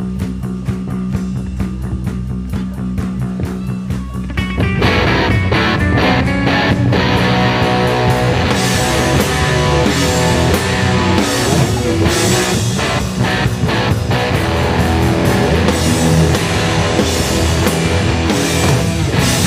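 Live rock band playing an instrumental passage: electric guitars and bass over a drum kit. It starts thinner and quieter, then the full band comes in louder with cymbals about five seconds in.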